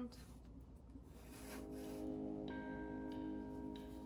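Background music fading in: held notes build into a sustained chord over the first few seconds.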